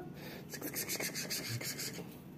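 Kittens at play with a plastic ribbon wand toy: a quick run of scratchy rasps, about eight a second, lasting just over a second.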